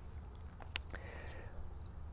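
Crickets chirping in a steady, high-pitched chorus, with a faint low rumble beneath.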